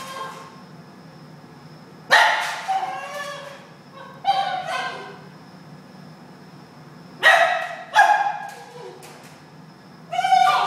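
A Basenji in a wire crate gives about five short, high, yelping cries in three bursts. Each cry starts sharply and trails off, some falling in pitch: a dog protesting at being left alone in its crate.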